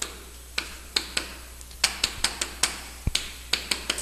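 Chalk tapping and clicking against a chalkboard while words are written: irregular sharp taps, a few a second, starting about half a second in.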